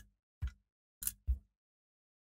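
Three short clicks and knocks as the halves of a scale-model leg are pressed and squeezed together by hand, the last two close together.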